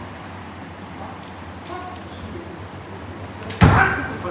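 A kendo strike about three and a half seconds in: one sudden loud crack of a bamboo shinai on armour with a stamping step on the wooden dojo floor. Before it, low hall noise with faint voices.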